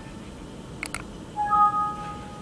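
A computer mouse click a little under a second in, then a two-note Windows alert chime, lower note first and then a higher one. The chime signals a 'Missing Numbers' error warning in the CNC program.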